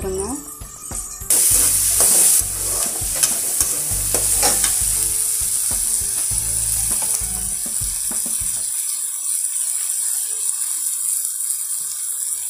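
Chopped tomatoes, onions and garlic sizzling in hot oil in a metal kadai, stirred with a steel slotted ladle that clicks and scrapes against the pan. The sizzle comes in loud about a second in and stays steady.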